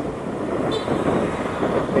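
Street traffic of scooters and a small truck, with wind rushing over the microphone of a moving bicycle rider: a steady noise without clear engine tones. A brief faint high-pitched tone sounds a little under a second in.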